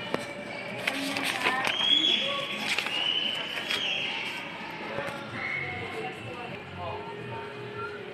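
Indistinct background voices and music, with a high tone held for about two seconds starting about two seconds in.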